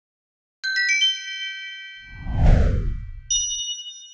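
Animated logo sound sting made of chime sounds: a quick run of bright, ringing chime notes, then a low whoosh that sweeps downward about two and a half seconds in, and near the end a final high ding that rings on.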